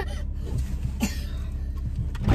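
A single cough about half a second in, over the steady low hum of a car engine idling as it warms up, heard inside the cabin.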